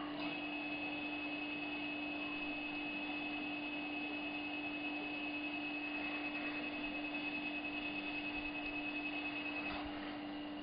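A dental laser's steady high-pitched emission tone, beeping continuously while the laser fires at the gum. It switches on just after the start and cuts off shortly before the end, over a constant low hum and hiss from the operatory equipment.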